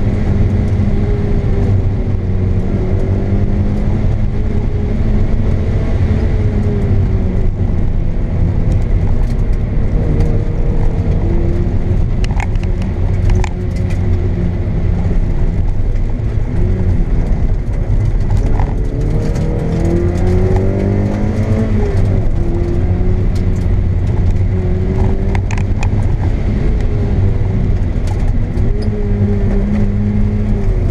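Mazda MX-5 NB's 1.8-litre four-cylinder engine heard from inside the cabin, driven hard on a rally stage. Its pitch climbs under acceleration and drops back through braking and gear changes, with a few sharp ticks partway through and again near the end.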